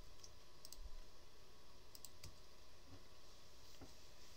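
A few faint, sharp computer clicks, some in quick pairs, as a mouse and keyboard are worked.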